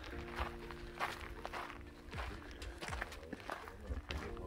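Footsteps of hikers walking on a rocky dirt trail at a steady pace, over background music of sustained chords.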